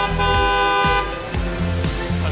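Background music with a steady beat, and a car horn held for about a second near the start.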